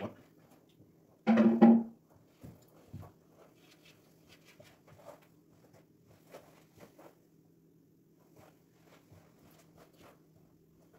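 A short, loud exclaimed "What?" about a second in, then faint scattered knocks and clicks over a steady low room hum.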